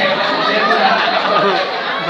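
Chatter of several people talking over one another, with no one voice standing out.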